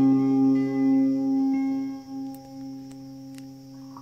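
Mandolin's closing chord ringing on and dying away, fading out over about two seconds, then only a faint tail with a few light clicks.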